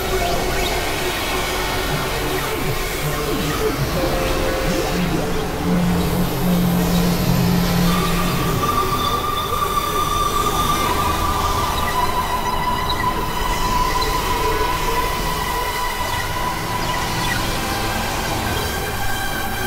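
Dense experimental electronic noise music: overlapping drones and a steady wash of noise. A low held tone comes in a few seconds in and fades, and a higher held tone sounds from about halfway through.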